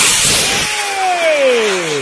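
Small bang fai (Thai homemade rocket made from 6-hun pipe) launching: a sudden loud rushing blast at ignition that keeps going as it climbs. From about half a second in, a whistling tone falls steadily in pitch as the rocket moves away.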